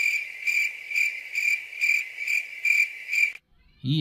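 Cricket chirping: a steady high trill pulsing about twice a second, which cuts in and cuts off abruptly a little past three seconds in.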